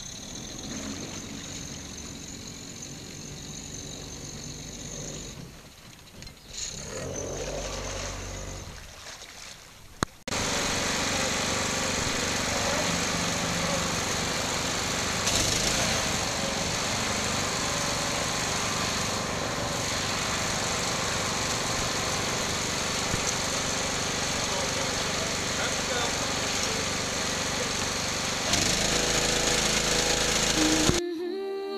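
A small boat's quiet engine running with water moving around the hull. About ten seconds in this cuts abruptly to a crane's engine running steadily and loudly while it holds a boat up in lifting straps; it gets a little louder near the end.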